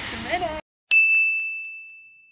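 A single high-pitched ding chime, an edited-in sound effect. It starts sharply about a second in after a moment of dead silence and rings on one steady note, fading away over about a second and a half.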